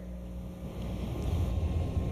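Low rumble and hiss of wind buffeting an outdoor microphone, building about halfway through, over a steady electrical hum.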